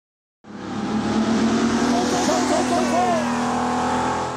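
Race car engine running steadily at high revs, with tires squealing in the middle. It starts abruptly about half a second in.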